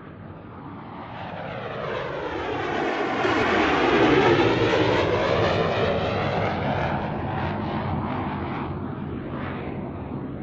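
An aircraft flying over. It swells to its loudest about four seconds in, then slowly fades as it passes.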